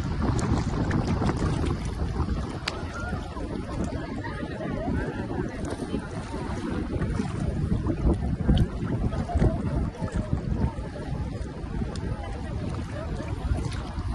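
Rumbling, sloshing noise of shallow sea water moving around a camera held at the waterline, mixed with wind buffeting the microphone, with a few louder splashes near the middle. Voices of bathers can be heard faintly behind it.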